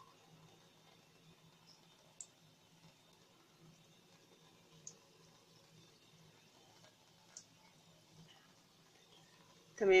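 Faint, sparse popping from donut dough frying gently in oil over moderate heat: three short, sharp clicks a couple of seconds apart, with a woman's voice saying a word at the very end.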